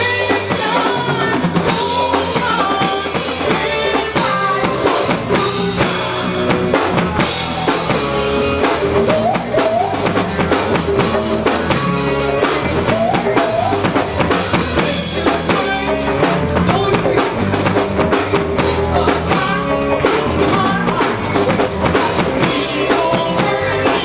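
A live funk band playing through a PA: drum kit, bass, guitars and keyboards keep a steady groove while a woman sings lead.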